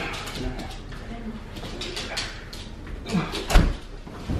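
Shuffling and light knocks as a heavy upholstered armchair is carried in through a doorway, with a low thump about three and a half seconds in.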